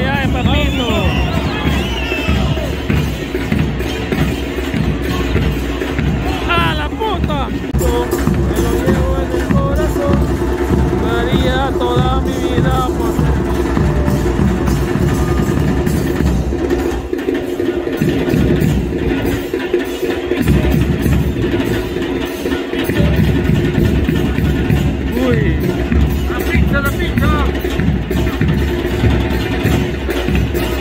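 Football supporters' drums beating a fast, steady rhythm in the stands, with voices chanting over them. The drumming breaks off briefly a few times around the middle.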